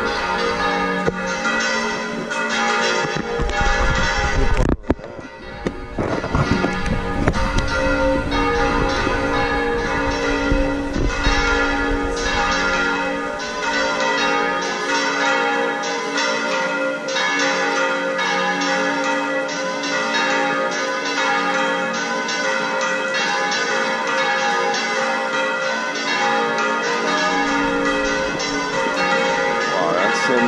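Church bells in the Córdoba cathedral bell tower ringing fast and overlapping, really loud, the bells being swung right over rather than struck in place. The ringing is a call to Sunday service.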